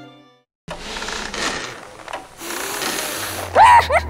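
A dry mechanical rattle starts suddenly after a moment of silence and runs for about three seconds. Near the end a high-pitched cackling laugh breaks in, in quick rising and falling bursts.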